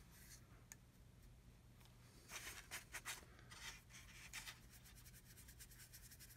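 Faint scratchy brushing of a soft makeup brush working powdered chalk pastel onto a plastic model kit's underside, in a few short strokes a couple of seconds in.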